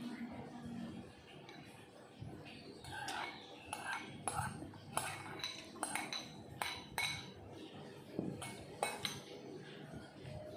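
Ceramic dishes clinking: a run of about a dozen sharp clinks, each with a short ring, from about three seconds in until near the end.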